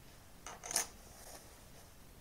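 A short, light clatter of small hard objects on the workbench: a few quick clicks about half a second in, the loudest near the middle, then a faint tick.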